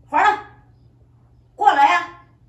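A woman's voice calling out loudly twice in short shouted calls, coaxing a cat to come out.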